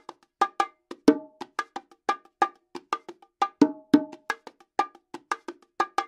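Pair of bongos played with bare hands in a martillo groove: quick strokes, several a second, with louder, deeper accented tones recurring in a repeating cycle.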